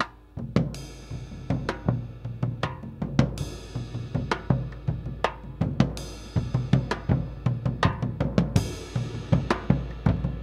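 Drum kit played freely, with no steady beat: irregular snare and bass drum hits, and cymbal crashes about three, six and eight and a half seconds in.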